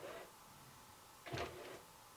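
Somfy RS100 io tubular motor in a roller shutter giving brief, faint jogs, the short up-and-down movement that signals the second end limit has been stored; the clearest comes a little over a second in.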